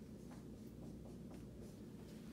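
Dry-erase marker writing on a whiteboard: a run of faint, short strokes, several a second.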